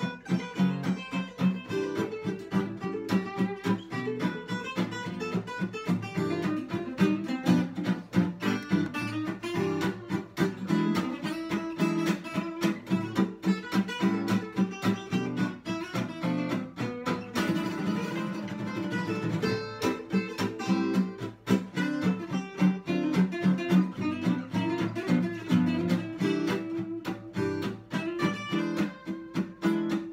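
Two acoustic guitars playing a swing jazz tune together, with a steady run of strummed chords and picked notes.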